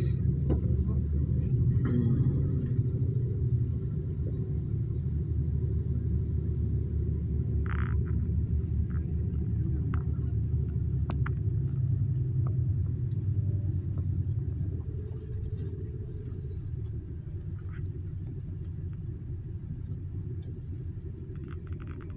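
Steady low rumble of a sightseeing bus's engine and tyres on the road, heard from inside the cabin while it drives. It grows a little quieter about two-thirds of the way through.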